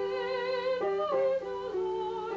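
A woman singing held notes with vibrato over piano accompaniment, changing pitch a few times.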